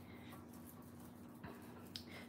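Very faint rubbing of a Teflon bone folder burnishing craft foil onto foam adhesive, over a steady low hum, with a faint tap about one and a half seconds in.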